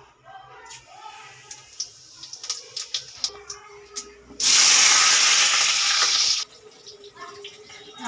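Cumin seeds crackling and popping in hot oil in an aluminium kadai, with scattered sharp pops. Partway through, a loud steady hiss sets in for about two seconds and then cuts off suddenly.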